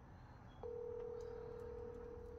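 Telephone ringback tone: one steady, even tone starting about half a second in, the sound of an outgoing call ringing on the other end.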